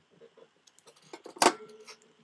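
Small handling clicks, then one sharp metallic clink with a brief ring about one and a half seconds in, as metal vape hardware and a spare battery for a mechanical mod are handled.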